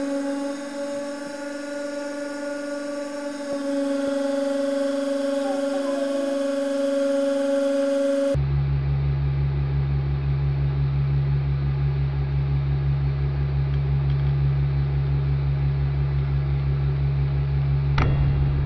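Hydraulic press running as its ram presses down on a carbon fiber bolt: a steady two-tone hum that about eight seconds in switches abruptly to a lower, louder drone.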